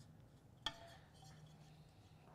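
Near silence with one light clink on a glass plate about two-thirds of a second in, leaving a faint ring.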